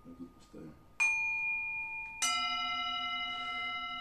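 Two metal singing bowls resting on a lying person's back, struck with a mallet one after the other about a second apart, each left ringing with a steady, clear tone. The second bowl rings lower than the first.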